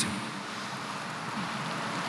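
Steady, even background hiss of room noise in the church, with no distinct event.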